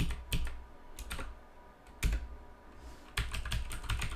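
Typing on a computer keyboard: scattered single keystrokes, then a quick run of keystrokes about three seconds in.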